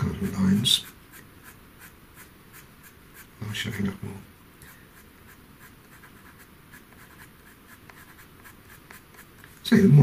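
Pastel pencil scratching across textured pastel paper in many short, light strokes as white fur hairs are drawn in.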